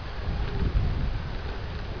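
Wind buffeting a camera microphone: a low, uneven rumble over a steady hiss.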